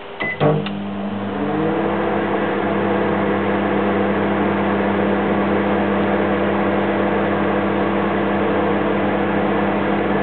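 Microwave oven being started: a few button clicks with a short beep, a loud click, then its running hum, which rises in pitch over about a second before settling into a steady drone.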